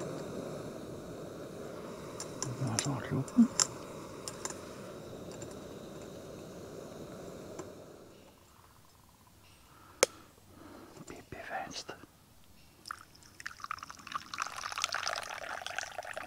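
A small gas camping stove burner (Soto Windmaster) running steadily under a Bialetti moka pot, with a few clicks of handling about three seconds in; the burner sound breaks off about eight seconds in. Near the end, coffee is poured from the moka pot into a mug.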